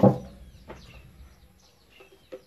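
Faint birds chirping in the background: a string of short, falling chirps. A light tap sounds about two-thirds of a second in.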